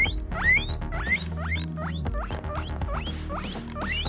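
A guinea pig squeaking in a quick, regular series of short rising squeaks, about three a second, with background music underneath.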